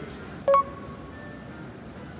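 A single short electronic beep about half a second in: a quick ping with a clear tone, over a faint steady background.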